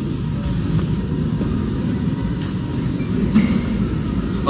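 Steady low rumbling background noise of a large hall, picked up through the sound system.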